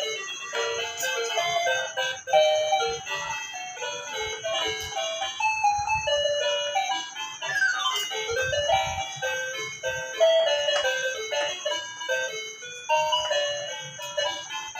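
Pink toy electronic piano played with both hands: a run of tinny electronic notes stepping up and down, with a quick falling run about eight seconds in. A faint steady high tone sits underneath.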